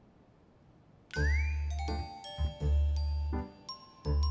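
Background score: after about a second of near silence, a light music cue starts with a rising slide, bell-like chime notes and a deep repeated bass note.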